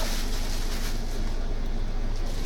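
Steady background noise: a continuous even rushing hiss over a low hum, with no distinct events.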